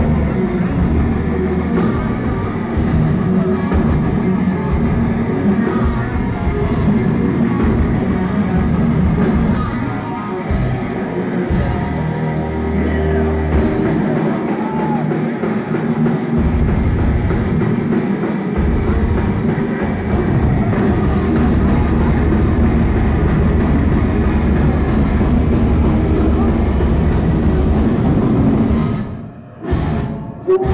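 Thrash metal band playing live: distorted electric guitars, bass and a pounding drum kit, loud and dense throughout. The music drops out briefly near the end, then comes back.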